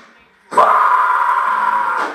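The band's playing stops dead for half a second, then a metal vocalist lets out one long scream into the microphone, held at a steady pitch.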